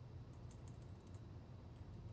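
Faint computer keyboard typing: a quick run of key clicks, then a few more near the end, as a misspelled word is deleted and retyped.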